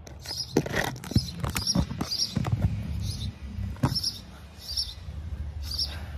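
Phone handled right at the microphone, giving knocks and rubbing. Under it runs a steady low motor drone, and a small bird chirps in short high notes over and over.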